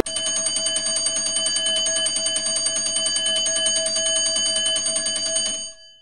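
Classroom countdown timer's alarm going off as time runs out: a rapid, steady bell-like ringing that lasts about five and a half seconds and then stops shortly before the end.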